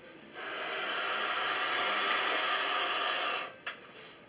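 Bayan bellows being pushed shut on the air valve: a steady rush of air for about three seconds, with no notes sounding, ending in a small click as the bellows close.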